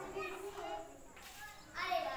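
Indistinct voices talking, among them children's voices, with no clear words.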